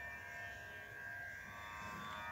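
Faint steady buzzing hum with no notes played.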